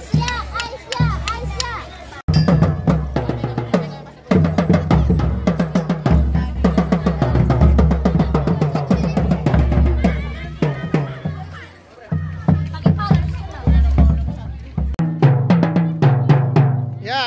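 Marching tenor drums, a set of three, struck with felt-headed mallets in runs of quick strokes with short pauses between, as in a drumline audition pattern. Children's voices chatter underneath.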